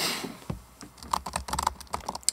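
Typing on a laptop keyboard: a quick, irregular run of key clicks, after a brief hiss at the very start.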